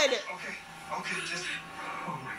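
Quiet, indistinct speech from a television playing a drama episode, after a high-pitched cry dies away at the very start.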